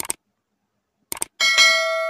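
Subscribe-button sound effect: short double clicks at the start and again about a second in, then a bright bell ding that rings on and slowly fades.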